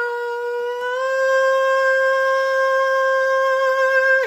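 A man singing a cappella, holding one long high note at a steady pitch that steps up slightly about a second in: the closing note of the song.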